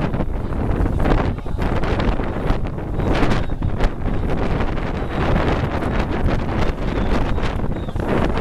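Wind buffeting the camera's microphone: a heavy, gusting rumble that rises and falls.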